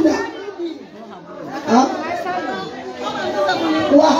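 Many women's voices overlapping in a crowded room, talking and chanting, with one voice through a microphone.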